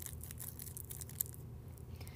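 A candy wrapper being crinkled by hand: faint, irregular crackling, with one sharper crackle a little past the middle.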